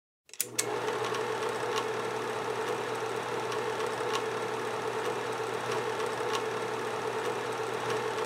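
A film projector running with a steady whir and hum, marked by a sharp tick about every second. It starts with a couple of clicks just under half a second in.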